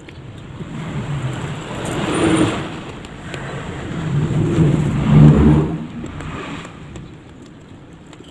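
Two motor vehicles passing by one after the other, each a low rumble that swells and fades over about two seconds, the second louder.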